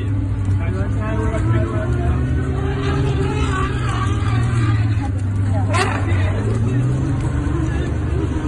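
Safari vehicle's engine running steadily under murmured voices of the passengers, with one loud, high cry that rises and falls about six seconds in.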